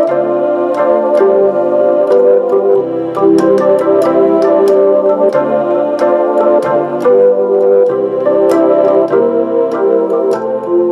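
Roland RA-50 arranger module, played from an M-Audio Oxygen49 MIDI keyboard, sounding an organ-like voice in held chords with changing notes, with sharp ticks keeping a rhythm over it.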